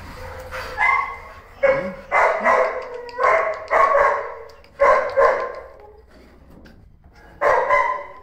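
A dog barking repeatedly in short single and double barks, then a pause and one more bark near the end.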